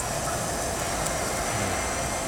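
Steady background noise of a restaurant dining room, with a faint voice near the end.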